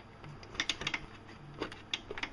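Small, irregular clicks and rattles of RCA cable plugs being handled and pushed into the jacks on the back of a VCR.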